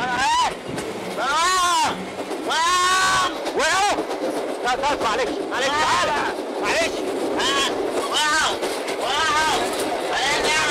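Raised, high-pitched voices shouting and crying out in a scuffle, one strained call after another, over a steady rushing background noise.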